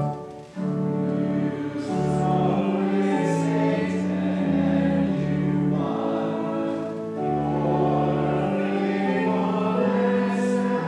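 Congregation singing a Lutheran hymn with pipe-organ-style accompaniment, the voices coming in about half a second in after the organ introduction stops. Sustained sung notes change pitch step by step, with the hiss of sung consonants.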